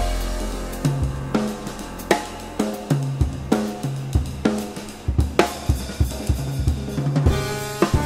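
Live jazz piano trio playing: grand piano chords over double bass notes, with the drum kit's snare, bass drum and cymbal strokes prominent throughout.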